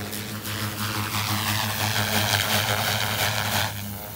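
Electric RC helicopter (XLP Protos 380) making a pass: its rotor blades swish and its motor whines. The sound swells from about half a second in, is loudest in the middle, and falls away sharply just before the end, over a steady low hum.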